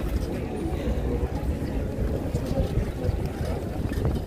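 Wind buffeting the microphone as an irregular low rumble, with the faint murmur of a crowd standing around.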